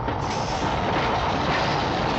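Diesel locomotive hauling a passenger train, running with a steady rushing noise that grows a little louder soon after the start, with a faint steady tone over it.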